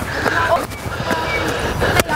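Faint children's voices over a steady rushing background noise.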